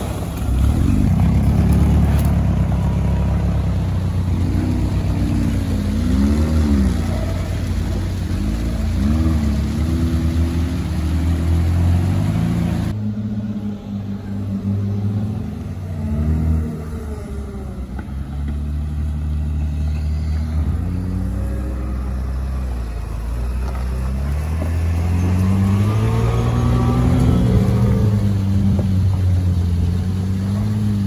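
Engines of lifted UAZ off-road vehicles on big mud tyres revving up and down repeatedly as they crawl through mud and water. A little under halfway through, the sound changes abruptly to a second UAZ's engine, which builds to higher revs near the end.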